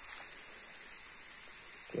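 Steady high-pitched insect buzz, even and unbroken.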